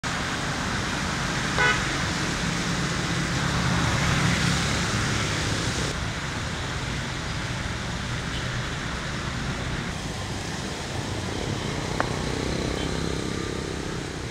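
Steady road traffic noise with a short car horn toot about a second and a half in.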